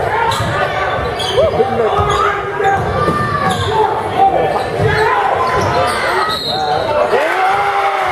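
Basketball game on a hardwood court: the ball bouncing on the floor and sneakers squeaking in many short, rising-and-falling squeals, one long squeal near the end, over a steady murmur of crowd voices.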